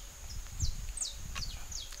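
Outdoor garden ambience: a few short, falling bird chirps over a steady high insect drone and a low rumble.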